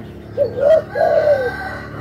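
Caged spotted dove cooing: two short coos followed by one longer, drawn-out coo.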